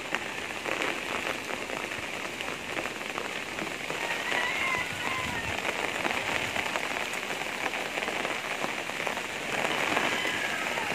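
Steady typhoon rain falling, a dense even hiss thick with the ticks of individual drops. A faint brief wavering call or whistle shows about four seconds in.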